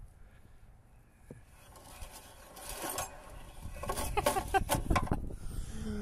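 Handling noise from a disassembled small engine being worked by hand: light clicks and rustling, quiet at first and growing louder over the last few seconds.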